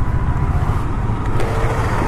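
KTM 390 single-cylinder motorcycle engine running steadily at low revs, a low even rumble of firing pulses.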